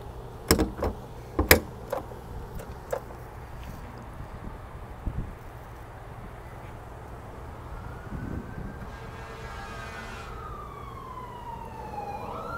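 A few sharp clicks and knocks as the Corvette's front trunk lid is unlatched and lifted, the loudest about a second and a half in. Over the last few seconds a faint emergency-vehicle siren wails, its pitch rising and then falling.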